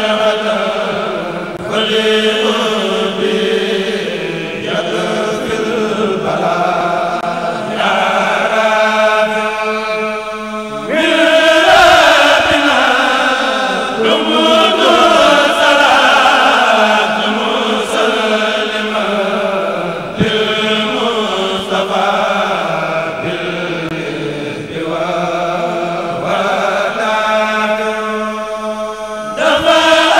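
A group of men chants a Mouride khassida in Arabic, unaccompanied, through microphones and a PA. The voices hold and bend long sung phrases that break every few seconds, with fuller, louder passages about 12 and 15 seconds in.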